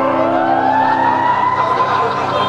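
Lap steel guitar sliding its final note up about an octave and holding it, a closing glissando over a held chord that stops about a second and a half in.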